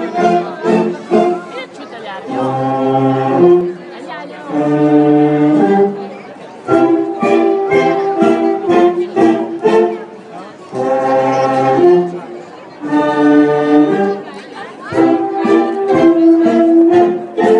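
Live band music: a tune played in phrases of held notes with short breaks between them, with crowd chatter underneath.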